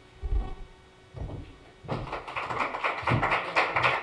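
A couple of low thumps, then an audience starts applauding about two seconds in.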